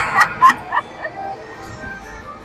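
A man's short burst of laughter in the first second. It gives way to soft electronic tones from a slot machine as its bonus feature starts.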